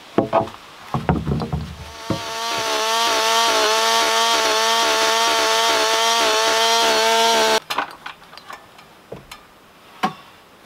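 A few knocks as a board is handled, then a Husqvarna two-stroke chainsaw runs up to full speed and holds steady for about five seconds as it cuts through a plank, stopping abruptly; scattered light knocks follow.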